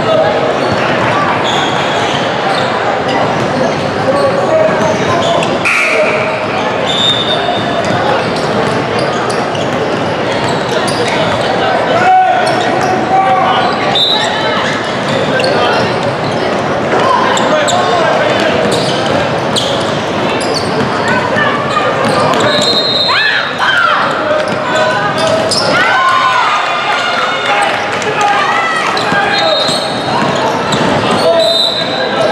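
Basketball being dribbled on a hardwood gym floor, amid voices of players and onlookers, all echoing in a large indoor hall.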